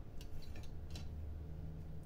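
A few faint light clicks and taps of thin plastic window-decoration pieces being handled and set down on the table, over a low steady hum.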